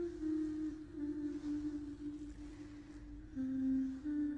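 A voice humming a slow, wordless tune in held notes that step gradually lower in pitch, the lowest coming near the end.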